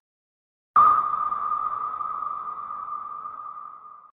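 A single electronic ping-like tone, the audio logo sting of a closing logo animation. It starts sharply just under a second in after a moment of silence, then rings on at one steady pitch while slowly fading.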